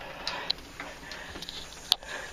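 A few faint clicks and taps, with one sharp click near the end.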